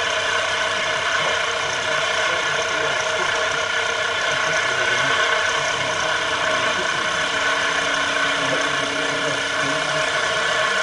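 CNC milling machine's end mill cutting into the copper heat spreader of an Intel Core 2 Duo processor: a steady, continuous cutting sound with the spindle's held whine over it.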